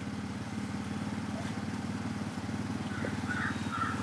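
A vehicle engine idling steadily, a low even drone with a fine regular pulse.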